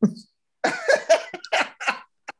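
A man laughing in a run of short bursts.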